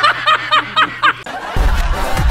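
Hearty laughter, a quick run of about six 'ha' pulses, which gives way about one and a half seconds in to music with a heavy, deep bass.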